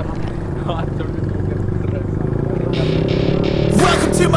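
Motorcycle engines running with a steady hum that grows gradually louder as the bikes approach, with people's voices. Music comes in near the end.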